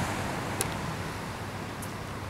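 Steady wash of small Pacific surf breaking on a sandy beach, a soft even rushing noise.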